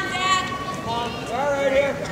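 Raised voices shouting in long held calls, one at the start and another from about a second in.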